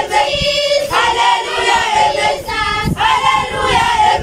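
A large group of schoolchildren singing together in unison, in phrases with short breaks between them.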